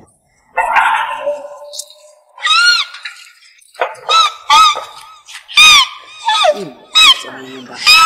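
A loud shout, then a run of short, high-pitched cries, each rising and falling, as someone is beaten with a wooden stick.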